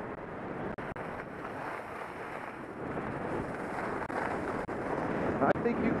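Wind rushing over a helmet-mounted camera's microphone while skiing downhill, mixed with skis sliding on groomed snow: a steady rush that grows slightly louder toward the end.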